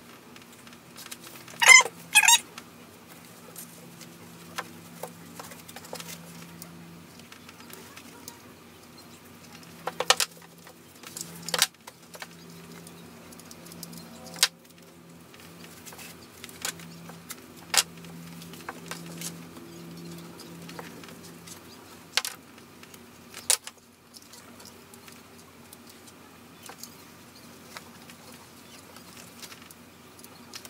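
Hands working a craft at a table: handling of an apron and canvas with scattered sharp clicks and taps. A brief squeaky sound comes twice about two seconds in.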